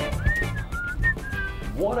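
A man whistling a short tune of a few rising and falling notes over background music with a steady beat.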